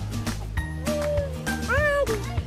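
Background music with a steady beat. Over it a toddler gives two short high-pitched vocal calls about a second apart, the second one rising.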